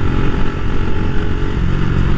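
KTM 390 Duke's single-cylinder engine, fitted with a Leo Vince aftermarket exhaust, running steadily at cruising speed as heard from the rider's seat, with wind rumble on the microphone.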